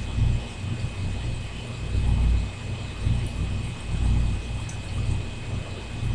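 Low, uneven rumble that swells and fades every second or so, over a steady hiss and a faint, steady high-pitched whine.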